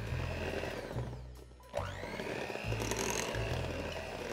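Electric hand mixer running, its beaters working mashed banana into a thick batter, with a short break in the sound about halfway through.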